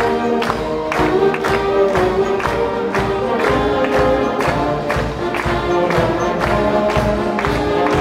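A youth concert band of trumpets, saxophones, clarinets and tubas playing a piece, held chords over a steady beat about twice a second.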